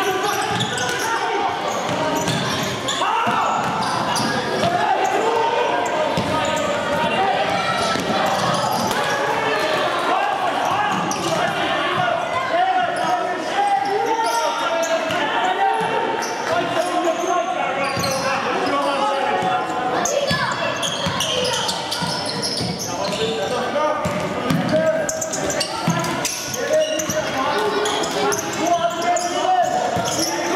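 Indoor futsal game in a reverberant sports hall: a steady mix of players' and spectators' voices and calls, none of it clear speech, with the ball's kicks and bounces and players' footfalls knocking on the wooden court.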